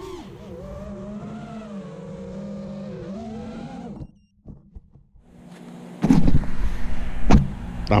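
FPV quadcopter's brushless motors and propellers whining as heard on its onboard camera, a steady pitched hum whose pitch wavers with the throttle. The sound drops out for about two seconds in the middle, then comes back much louder with a rushing wind noise as the quad flies close past the pilot.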